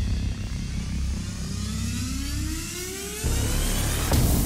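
Broadcast graphics sound effect: a deep rumble with rising sweeps that climb steadily in pitch, building up and jumping louder about three seconds in.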